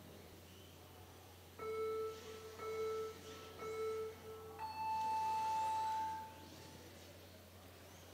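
Electronic start-countdown beeps: three short, lower beeps about a second apart, then one longer, higher tone lasting about a second and a half, signalling the start of the run.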